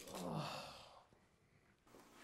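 A man sighs: one breathy exhale of under a second, with a faint voice falling in pitch near its start.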